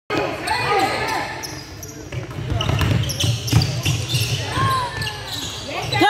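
A basketball bouncing repeatedly on a hardwood gym floor during play, a series of sharp thuds, with players' voices mixed in.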